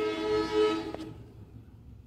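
A horn sounding one long, steady blast of several notes together, which stops about a second in.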